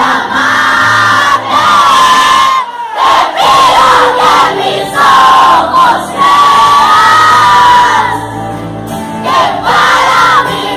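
Live pop song with the audience singing along loudly over the band and the amplified lead vocal, heard from within the crowd. The melody has long held notes, with a brief drop in level about three seconds in.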